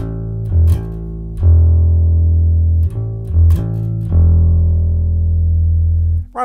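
Electric bass guitar played through the Ampire amp simulator's bass preset: a few plucked low notes, two of them held for over a second each, with short notes between. It is being played to check the recording input level.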